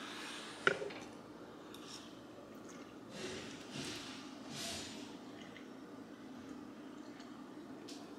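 A fork clicks once sharply against the dish, then a mouthful of pasta is chewed quietly, with a few breaths through the nose. A low steady hum runs underneath.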